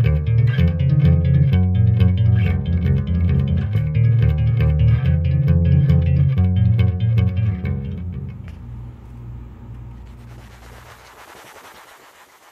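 Electric bass guitar played fast, a dense run of low notes with sharp plucked attacks. About eight seconds in the playing stops and the last notes ring out and fade into faint hiss.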